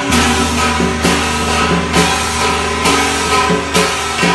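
Funeral band music played live: a sustained melody line over a steady drone, with a sharp percussion crash about once a second.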